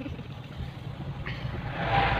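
Steady low rumble of a car driving on a wet road, heard from inside the cabin. A rushing hiss builds up over the last half second or so.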